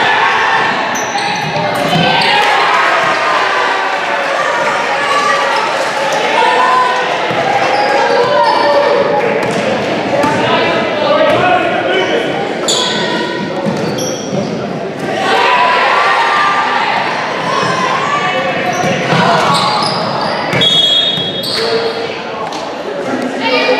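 Basketball game in a gymnasium: a ball bouncing on the hardwood court amid spectators' and players' voices, all echoing in the large hall.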